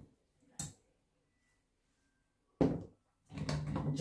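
Utensils handled over a wire-mesh sieve and bowl: a short tap about half a second in, then a louder knock about two and a half seconds in.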